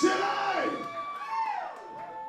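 A loud yell at the start that fades away, over steady ringing tones of electric guitar amp feedback. The ringing bends down and back up in pitch about a second and a half in.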